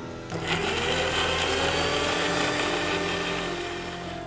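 Electric mixer grinder running, grinding tomato, ginger and salt for chutney. The motor starts about a third of a second in, its pitch rising briefly as it gets up to speed, then runs steadily.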